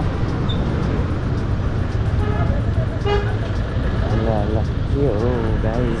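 Motorcycle riding in city traffic: a steady low rumble of engine and wind noise, with other vehicles around.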